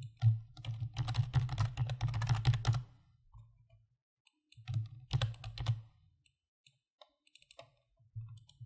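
Typing on a computer keyboard in two runs, the first about three seconds long and the second about a second, followed by a few scattered clicks near the end.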